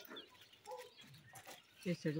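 Faint outdoor background sounds, then near the end a farm animal starts a long, low, steady call.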